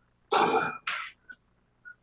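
A person clearing their throat with a short cough, in two quick bursts about a quarter second in, followed by two faint short sounds.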